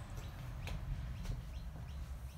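Faint bird calls, a few short falling chirps, over a low background rumble.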